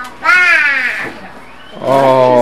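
A young child's high-pitched squeal, lasting under a second and falling slightly in pitch.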